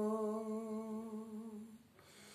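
A man's unaccompanied voice holding one long, steady hummed note in an ilahi (a Turkish Islamic hymn), fading out near the end.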